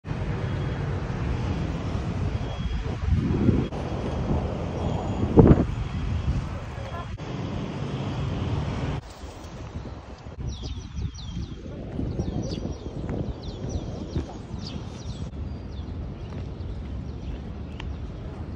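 Street traffic with wind buffeting the microphone, swelling louder twice in the first half. After an abrupt drop in level, the ambience is quieter, with a run of short, high, downward-sweeping bird chirps repeated over several seconds.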